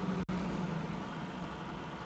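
Steady background hum and noise in a pause between speeches, with a brief audio dropout about a quarter second in.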